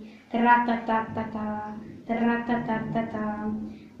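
A female voice makes two long vocal sounds at a steady pitch, each close to two seconds, mimicking the whistling and wailing of a makeshift children's band.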